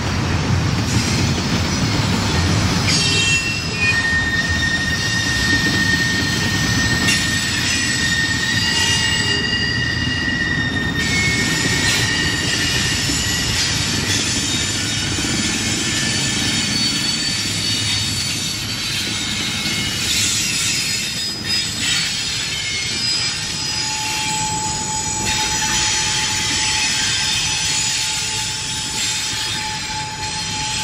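Double-stack intermodal freight cars rolling through a sharp curve. The wheels keep up a steady rumble on the rail, with high, steady flange squeal that comes and goes: one high squeal holds through the first third, and a lower-pitched squeal sets in about two-thirds of the way through.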